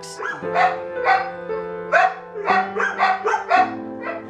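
Dogs in shelter kennels barking: about half a dozen short barks spread over a few seconds, over background music holding steady chords.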